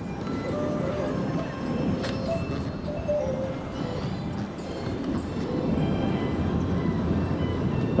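Steady rushing noise of a full-flowing mountain river, the Terek, running high.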